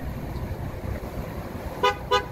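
A short, high horn toot near the end, with a second following right after, over a steady low background rumble.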